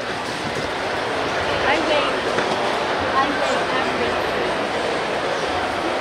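Steady background hubbub of a crowded public venue: a continuous noise with faint, distant voices in it.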